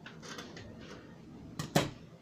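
Scissors cutting through cotton Ankara fabric, the blades closing in a few short snips, then a sharp clack near the end as the scissors are set down on the table.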